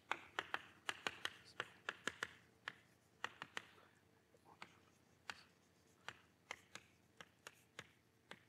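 Chalk tapping and scratching on a blackboard as words are written. It comes as many short, faint clicks, quick and close together for the first two seconds or so, then sparser.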